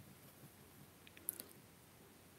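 Near silence, with a brief cluster of faint clicks a little past the middle from hands working a metal crochet hook and yarn.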